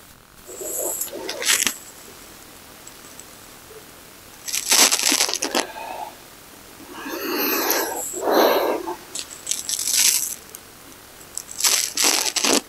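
A person breathing audibly in and out through the mouth while moving quickly through a repeated yoga flow. A breath comes every second or two, some of them sighed out with a little voice.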